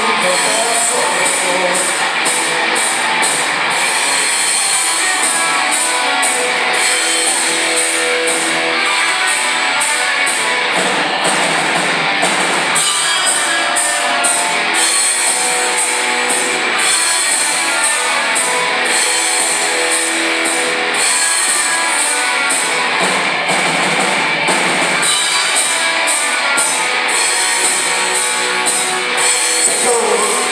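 Live rock band playing an instrumental passage: electric guitars and bass over a drum kit keeping a steady beat, with no singing, heard from far back in the hall.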